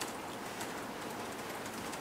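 Steady low hiss of room tone and microphone noise, with no distinct event.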